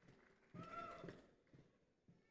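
A faint, brief call from one voice in the audience, a held pitched 'woo'-like shout that falls in pitch at its end, over near silence.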